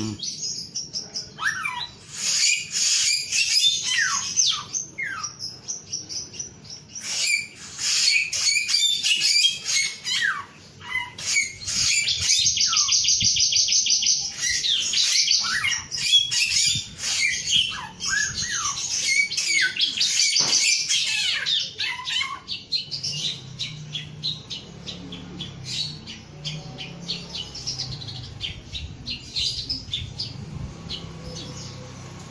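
Caged male black-naped oriole (samyong) singing: a busy run of quick high chirps and short downward-sliding whistles, with fast trilled passages in the middle. In the last third the song thins to scattered, quieter chirps.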